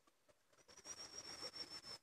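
Dry bamboo stalks and leaf litter rustling and scraping, starting about half a second in and running for about a second and a half as someone pushes through a bamboo thicket. A thin high tone that wavers slightly sounds over it for about a second.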